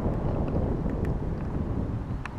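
Wind buffeting the microphone of a moving bicycle, over a steady low rumble from the tyres rolling on a gravel track.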